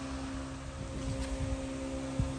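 A steady low hum with two constant tones underneath, and no tool strikes or other distinct events.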